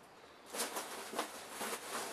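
Packing material rustling and crinkling as hands dig through a cardboard shipping box, starting about half a second in, with a few light ticks and knocks.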